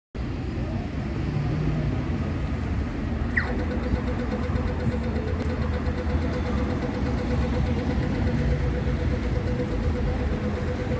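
City street traffic: a steady low rumble of bus and car engines. About three seconds in a brief falling whine is heard, then a steady high hum sets in and holds.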